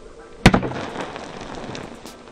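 A water balloon bursts with one sharp pop as it is struck by a plastic bat, about half a second in, followed by about a second of water spattering.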